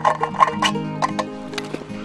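A quick run of sharp metallic clicks and taps in the first half, a knife point being worked through the lid of a tinned milk can, over steady background music.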